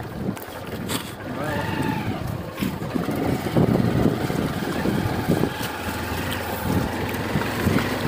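Motorcycle running while riding over a bumpy dirt forest trail, giving an uneven, steady rumble.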